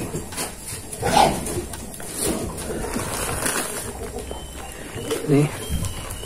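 Black plastic polybag crinkling and bundled ficus cuttings rustling as they are handled, in several short, scattered bursts.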